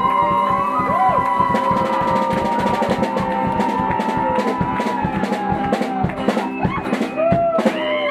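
Live rock band playing a song: a long held sung note over a steady drum-kit beat and guitar, with a new sung phrase starting near the end.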